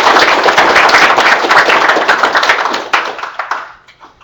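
Audience applauding, a dense patter of many hands clapping that thins out and stops near the end.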